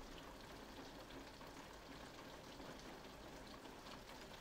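Faint, steady rain falling on a window, heard as an even hiss with small scattered ticks.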